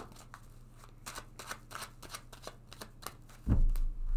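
Tarot deck being shuffled by hand: a run of soft, quick card flicks and snaps. About three and a half seconds in comes a much louder low thump.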